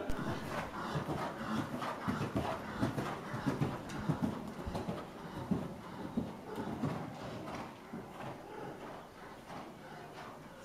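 A horse's hoofbeats on the sand footing of an indoor riding hall: an irregular run of soft thuds that fades gradually toward the end.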